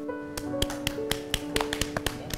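A few people clapping their hands in short, uneven claps, starting about half a second in, over background music with long held notes.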